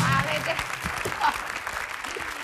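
Studio audience applauding, a dense steady clapping.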